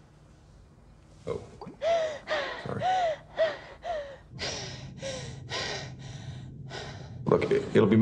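A distressed woman gasping and sobbing for breath, about ten quick ragged gasps at roughly two a second, starting about a second in.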